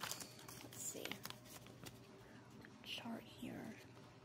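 Paper and foil blind-bag packaging being handled: short crinkles and clicks in the first second and a half, with a brief soft murmured voice about three seconds in.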